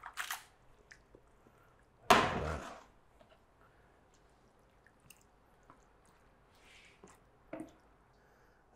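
Sauce-coated rigatoni being stirred and tossed in a frying pan and lifted onto a plate: soft wet squelches and light utensil scrapes, with one louder thump about two seconds in.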